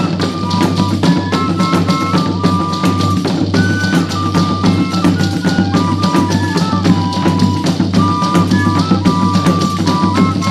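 Instrumental passage of a Bahian Reis (folia de reis) folk ensemble: a melody of held notes stepping up and down over steady, continuous drumming.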